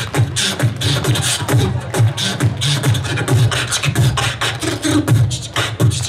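Solo beatboxing through a microphone and PA: a deep bass line under fast, steady kick, snare and hi-hat sounds.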